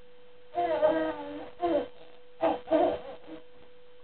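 A ten-month-old baby babbling in four short bursts of high-pitched vocal sounds. The first burst, about half a second in, is the longest.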